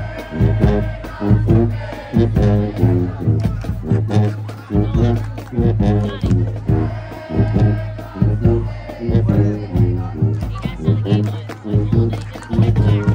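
Marching band playing in the stands, with sousaphones close by carrying a loud bass line under brass and a regular drum beat.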